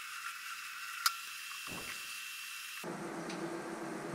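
Benchtop mill-drill running with a steady high whine and hiss while drilling a pin hole through a knife's handle scales, with one sharp click about a second in.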